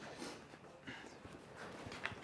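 Faint footsteps and movement: a few soft, scattered taps and rustles.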